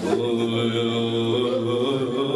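A man's voice chanting a Shia mourning lament into a microphone, holding one long note for about a second and a half before the melody moves on.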